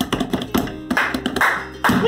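Hands drumming on an upturned metal cooking pot in quick, irregular taps, the traditional drumming on the pot before it is lifted off a maqluba.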